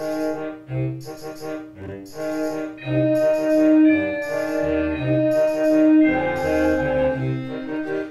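Computer playback of a concert band score from Finale's sound fonts: sustained, dark wind and brass chords over a pulsing low line, with a tambourine struck about once a second.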